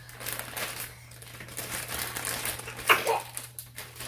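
Thin clear plastic packaging crinkling and rustling as a unicorn headband is handled and pulled out of it, with one sharper, louder sound about three seconds in.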